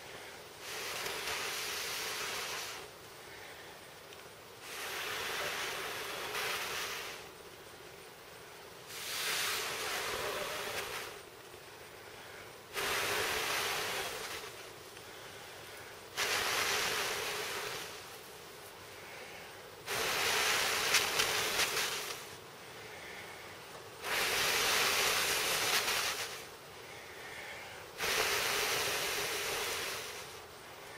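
A person blowing long, steady breaths into a smouldering tinder bundle to bring the ember to flame: about eight blows of two seconds or so each, spaced roughly four seconds apart, with quieter pauses for breath between.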